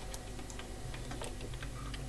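Faint, scattered small clicks and scrapes of multimeter test probe tips being worked into the holes of a mains wall socket, feeling for contact, over a steady low hum.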